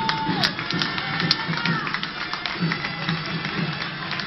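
Crowd of onlookers talking over music played outdoors, with a few sharp claps or clicks.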